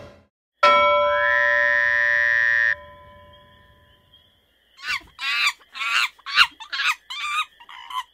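Cartoon sound effects. A held electronic tone with several steady pitches lasts about two seconds and cuts off suddenly. After a pause come about eight short warbling bursts with bending pitch.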